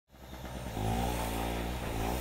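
Handheld electric paint spray gun running with a steady low buzz, fading in over the first second and shifting slightly in tone as it sprays.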